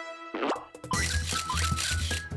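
A cartoon pop sound effect, then light children's background music starts about a second in: a steady bass with short melody notes and quick clicks over it.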